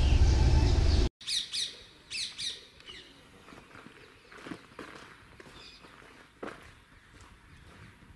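A louder sound carried over from before cuts off abruptly about a second in, then birds chirp: a few short, high, downward-sweeping chirps, followed by fainter scattered chirps and clicks.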